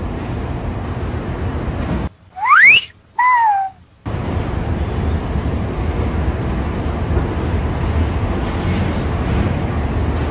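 A loud two-part wolf whistle, a quick rising sweep followed by a falling one, about two and a half seconds in; the background cuts out around it. Before and after, a steady low rumble of street noise.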